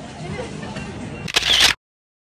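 A single camera shutter click, loud and brief, about one and a half seconds in, over faint background chatter.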